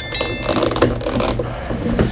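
The rotary selector dial of a DT9205A digital multimeter being turned by hand to OFF, giving a run of ratchety clicks as it passes through its detent positions. A short high chime sounds at the very start.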